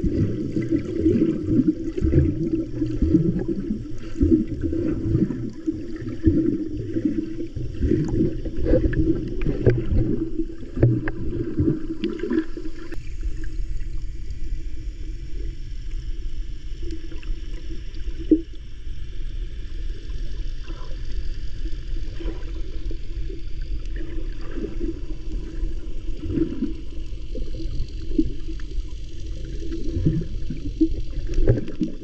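Muffled water sound picked up by a camera held underwater: irregular sloshing and gurgling from a swimmer's kicks and strokes for about the first twelve seconds, then a steadier low rumble of the water with a few faint knocks.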